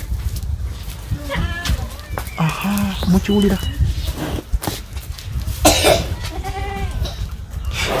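A young calf calling several times in short pitched cries, over a steady low rumble.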